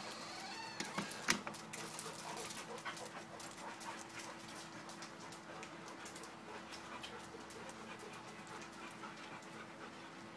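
Retriever dog panting, a rapid run of soft breaths, over a faint steady low hum, with one sharp click about a second in.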